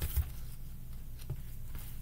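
Tarot cards being handled and laid down on a cloth-covered table: a couple of soft taps and slides over a low steady hum.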